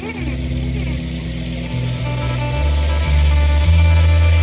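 Rock band recording: an electric bass holds low sustained notes that step in pitch, under sustained distorted guitar and a wash of cymbals.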